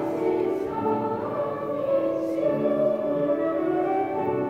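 Children's choir singing with piano accompaniment, holding sustained notes that move from pitch to pitch.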